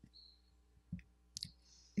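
A few faint, sharp clicks in a pause in close-miked speech, with a short soft breath just before the voice resumes.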